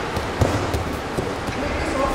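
An aikido partner being thrown lands on the gym mat with a thud about half a second in, followed by a fainter knock a little later.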